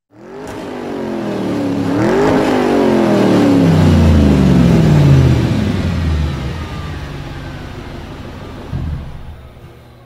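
A car engine driving past: it grows louder over about five seconds, with a brief rise in pitch about two seconds in, then its pitch falls and it fades away.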